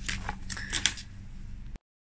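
Paper sticker sheets rustling and crackling as they are handled, with a few sharp crinkles in the first second over a low steady hum. The sound cuts off abruptly near the end.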